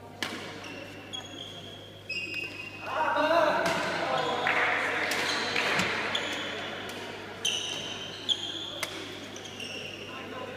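Badminton rally in a large sports hall: sharp racket hits on the shuttlecock and short high squeaks of shoes on the court floor, with voices rising over the play from about three to six seconds in.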